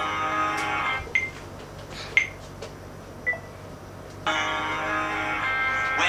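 A phone's three-second countdown timer: three short high beeps about a second apart, after a burst of music stops about a second in. A song begins about a second after the last beep, as the recording starts.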